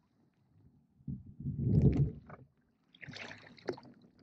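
Oars working an inflatable rowboat on flat water: a low rush of water about a second in, the loudest part, then small splashes and drips near the end.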